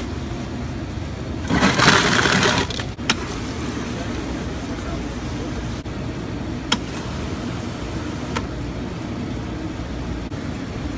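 Ice clattering out of a soda fountain's dispenser into a large foam cup for about a second and a half, then fountain soda pouring steadily into the cup, with a few short sharp clicks.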